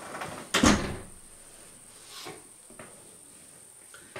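A single clunk about half a second in as something beside the speaker is shut, followed by a couple of faint small knocks as he moves.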